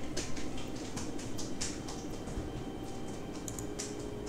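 A run of light, irregular clicks and rustles, with a sharper click near the end.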